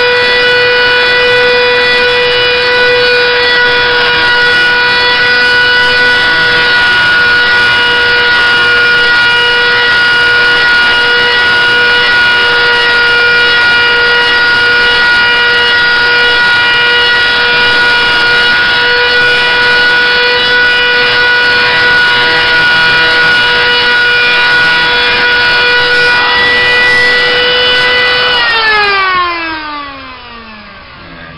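Small electric router held upside down, running at full speed with a loud steady whine while the edge of a chrome-plated metal guitar bridge is trimmed against its bit. Near the end it is switched off and spins down, its pitch falling away.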